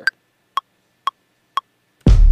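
Ableton Live's metronome counting in one bar: four short clicks half a second apart, 120 beats per minute. The first click, on the downbeat, is higher-pitched than the other three.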